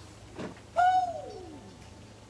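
A single voice-like note, held briefly and then gliding down in pitch over about a second.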